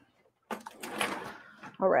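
A kitchen drawer being rummaged in and slid, a scraping rattle lasting about a second, followed by a short spoken 'all right' near the end.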